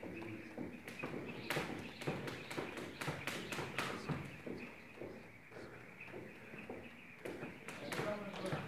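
Jump rope doing double-unders on a rubber gym floor: quick, regular slaps of the rope and light landings, a few a second, thinning out briefly after about five seconds.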